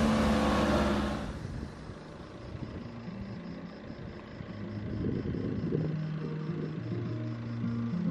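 A Citroën Jumper van drives past close by, its engine and tyres loud for about the first second before the sound drops away. After that, soft background music with sustained low notes carries on.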